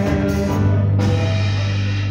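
Live church band music: drums and instruments playing, with a sharp hit about a second in, after which the high end fades away while a low note is held.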